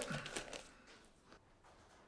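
Faint rustle and light clicks of a can being pulled out of a shrink-wrapped plastic multipack, dying away within the first second to near silence.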